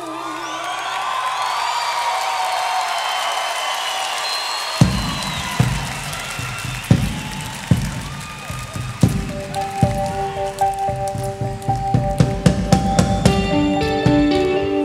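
Live band music with no singing. Wavering high tones open it, then irregular drum-kit hits come in about five seconds in, with plucked guitar notes and quick cymbal ticks building toward the end.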